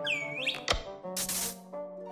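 Cartoon sound effects for a flying hoverboard over background music. There is a swooping pitch glide at the start, a sharp click less than a second in, then a short hissing whoosh just past the middle.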